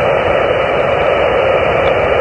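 Xiegu G90 HF transceiver receiving on 15-meter upper sideband: a steady hiss of band noise through its speaker, held within the narrow voice passband, with no station answering the CQ call. The hiss starts and stops abruptly as the transmitter is unkeyed and keyed.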